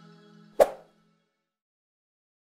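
The last of the outro music fading out, then a single short pop sound effect just over half a second in, played as the on-screen subscribe button is clicked.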